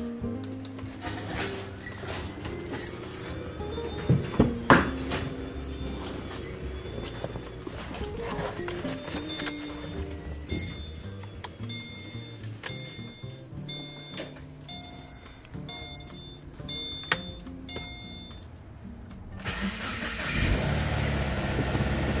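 Background music throughout; near the end a Subaru FB25 2.5-litre flat-four starts and runs at a fast idle. It is running naturally aspirated with the SC14 supercharger's clutch disengaged, so there is no supercharger whine.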